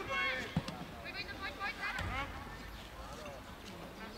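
Voices shouting and calling around a youth football pitch, in the first half or so, then quieter. A single sharp thud comes about half a second in.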